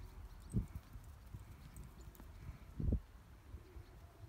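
A foal's hooves thudding softly on turf as it walks, over a low rumble of wind on the microphone. Two louder low thumps come about half a second in and just before three seconds.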